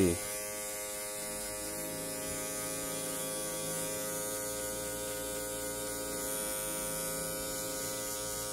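Electric hair clipper running with a steady buzz as it is passed over the side of the head, blending away the lines of a fade.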